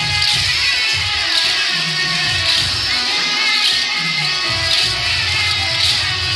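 Loud devotional music with a steady beat, accented about once a second, playing for the dancing procession.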